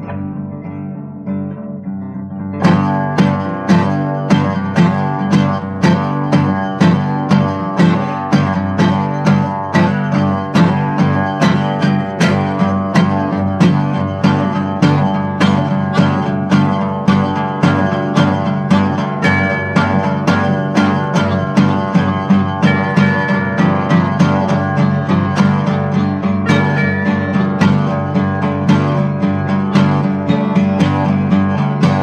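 Acoustic guitar in a folk-blues recording. Soft picking for about two seconds, then hard, steady strumming comes in and keeps an even, driving rhythm, the guitar standing in for the train pulling out and picking up speed.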